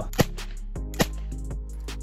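CZ 247 9x19 mm submachine gun firing single shots, under a second apart.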